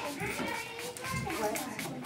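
Background chatter of children's and adults' voices in a small room.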